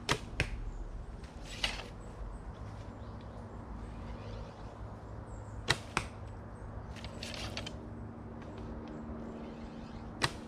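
Two shots from a 30-pound Mongolian horse bow, one near the start and one a little past halfway. Each is a sharp snap of the string on release, followed about a third of a second later by a second click as the arrow strikes the target. Quieter rustles fall between the shots.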